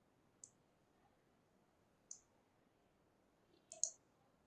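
Near silence broken by four faint, sharp clicks: one about half a second in, one about two seconds in, and a quick pair near the end.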